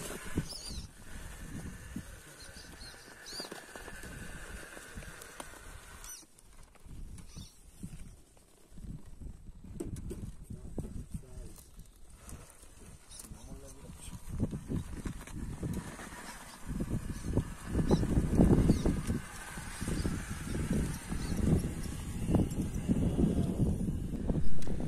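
RC rock crawler's electric motor and drivetrain whining in spells as it crawls over rock, under irregular low rumbling that grows louder in the second half.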